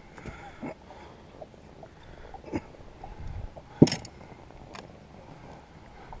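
A few light knocks and clatters of a landed fish and gear being handled on a small boat's deck, the loudest about four seconds in, over a faint steady background.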